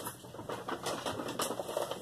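Rustling and light knocks of food packages and bags being handled and taken out.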